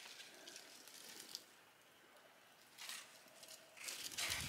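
Near silence, broken by a few faint scrapes and rustles of cardboard egg crates being handled and set down in a plastic bin, about a second and a half in and again near three seconds.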